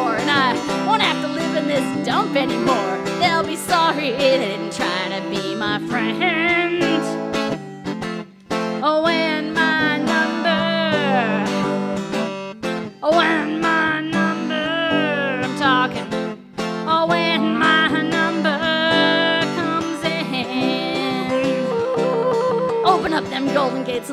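Live acoustic music: a clarinet playing a wavering, gliding melody over a small acoustic string instrument. The music dips briefly a few times.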